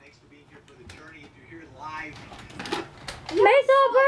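Light clicks and knocks of plastic toys being handled. About three seconds in, a high-pitched voice sets in with long, drawn-out arching sounds.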